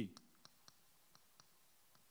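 Chalk tapping and clicking against a chalkboard while writing: a few faint, irregularly spaced clicks.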